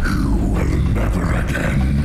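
Film soundtrack: dramatic music over a deep, continuous rumble.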